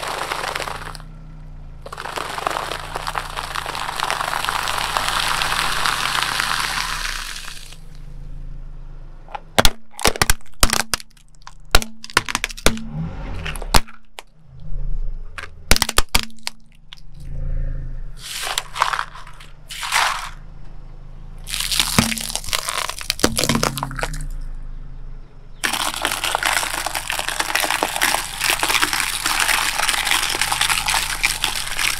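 A car tyre rolling over and crushing things on concrete: first a long crunch of a plastic bag packed with puffed corn snacks, then from about ten seconds in a run of sharp cracks and snaps of plastic breaking, and steady crunching again near the end. A low engine hum runs underneath.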